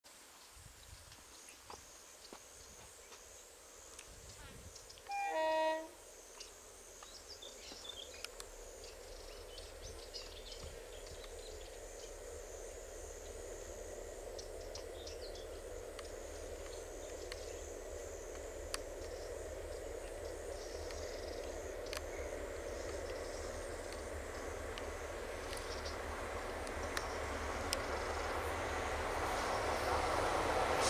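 A short horn blast from the train about five seconds in. After it comes the low rumble of a heavy electric-hauled express train running through a long tunnel toward its mouth, faint at first and growing steadily louder.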